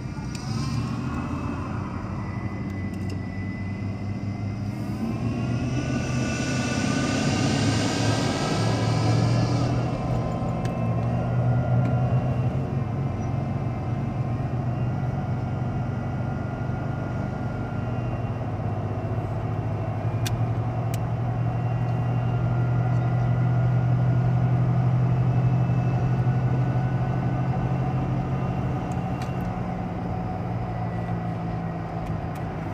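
Car engine and road noise heard from inside the cabin as the car pulls away from a stop and accelerates to cruising speed. The engine note rises during the first ten seconds, then settles into a steady drone.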